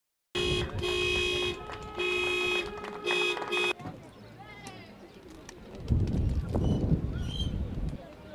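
Three car-horn blasts, the first the longest, each starting and stopping sharply. They cut off abruptly, leaving open-air ambience with distant voices and shouts that grow louder in the last two seconds.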